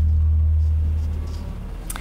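Closing bass note of a TV news programme's ident jingle: a deep held hum that fades out through the second half, with a short click near the end.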